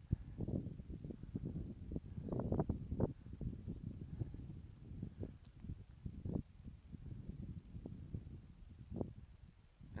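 Wind buffeting the microphone in gusts, a low uneven rumble that swells strongest about two and a half seconds in. The baboons calling from the opposite cliff have gone quiet.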